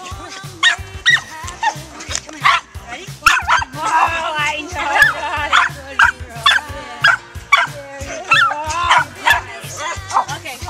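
Small dogs yipping and barking excitedly in many short, sharp calls while they jump up at a person, over background music.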